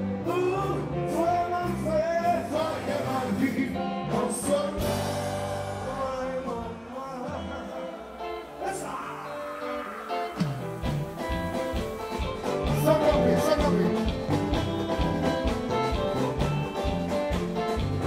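Haitian compas band playing live with a singer. The bass and drums fall away for a few seconds mid-way, then come back in with a steady beat about ten seconds in.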